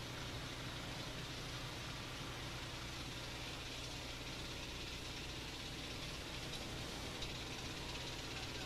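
Steady faint hiss with a low hum underneath, unchanging throughout: the background noise of an old videotape soundtrack.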